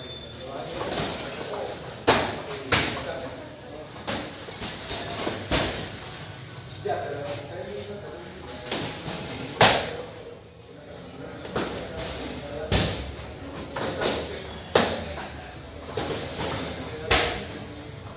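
Muay Thai sparring: punches and kicks landing on boxing gloves, shin guards and headgear as sharp slaps and thuds at an irregular pace, one every second or two, the loudest about halfway through.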